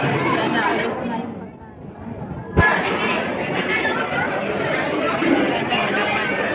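Background chatter of many overlapping voices in a busy food court, which fades and dulls about a second in, then cuts back abruptly with a short low thump a little before halfway.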